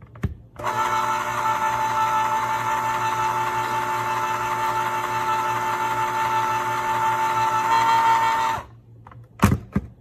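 Hamilton Beach Smooth Touch electric can opener motor running steadily for about eight seconds as it cuts around the rim of a can, rising slightly in pitch just before it stops. A click comes just before it starts, and a couple of clicks follow as the lever is lifted to release the can.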